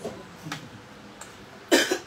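A person coughs once, a single loud cough near the end.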